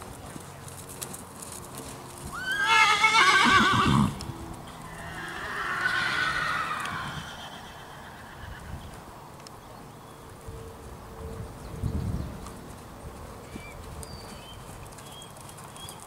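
A horse whinnying twice: a loud, quavering neigh about two seconds in, then a softer, shorter call a couple of seconds later, with faint hoofbeats on sand between.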